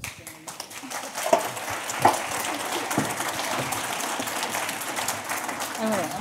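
Audience applauding, a dense clapping that starts abruptly and holds steady, with a few voices calling out in it.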